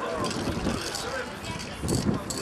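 People talking in the background, over steady traffic and street noise.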